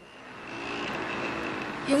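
Street traffic noise with a small motorcycle or scooter engine passing close by, swelling over the first half second and then holding steady. A woman's voice starts at the very end.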